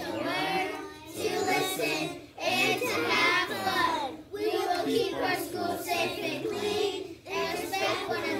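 A class of kindergarten children reciting together in unison, in chanted phrases broken by short pauses.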